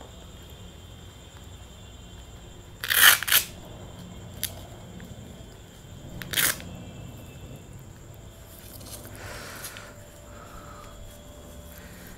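Hook-and-loop (velcro) straps on a leather motorcycle glove's cuff being pulled open, giving short ripping bursts: a double one about three seconds in and another a little after six seconds. A softer, longer rustle of the glove being handled comes near the end.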